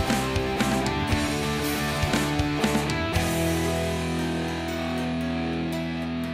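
Rock band of drum kit, acoustic and electric guitars and bass playing an instrumental intro: drum hits about twice a second under guitar chords, then a chord held ringing from about halfway in.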